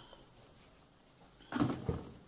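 Quiet room, then, about one and a half seconds in, a brief burst of knocks and rustle as products are handled on a wooden table.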